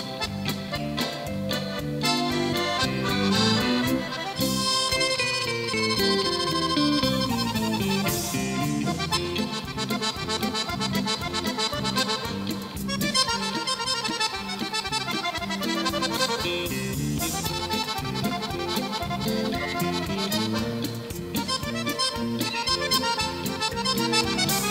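An accordion playing a lively tune in quick runs of notes, with an electric guitar accompanying.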